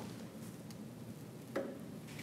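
Hand-lever hot foil stamping press worked by its lever, giving only a couple of faint ticks, the louder one about one and a half seconds in.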